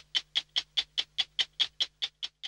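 Stopwatch ticking, about five sharp, even ticks a second.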